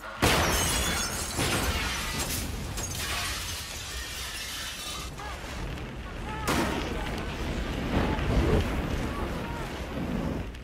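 Car bomb going off: a sudden blast about a quarter-second in, then a sustained roar with shattering glass and falling debris, and a second loud blast about six and a half seconds in.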